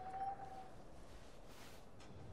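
Faint film soundtrack between lines of dialogue: a soft held note that fades within the first half second, then low hiss with a brief faint rush near the end.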